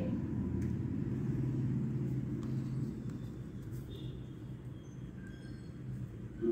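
A low, steady rumble that fades over the second half, with a few faint small clicks.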